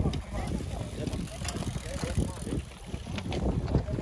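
Wind buffeting the microphone in a fluctuating low rumble, with faint spectators' voices and a few light clicks over it.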